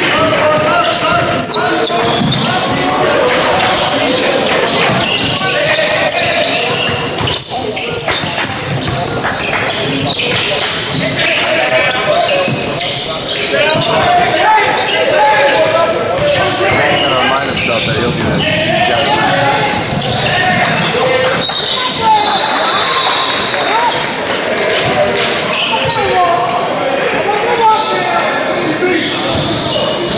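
Basketball game in an echoing gymnasium: a ball bouncing on the hardwood court amid a steady mix of indistinct voices from players and spectators.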